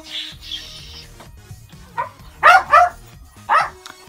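A dog barking four times in short, loud, high-pitched barks: one, then two close together, then one more.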